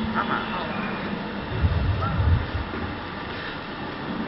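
Steady background noise of a large hall with faint, indistinct voices, and a few low bumps about halfway through.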